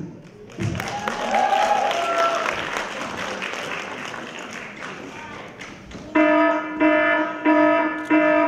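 Audience applause with some shouts from the crowd, slowly dying down. About six seconds in, the dance music starts with a loud repeated synth note pulsing roughly every half second.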